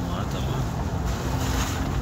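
Steady low rumble of a vehicle's engine and tyres, heard from inside the cabin while driving, with a voice faintly over it.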